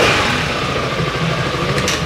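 Yamaha XMAX scooter engine running steadily.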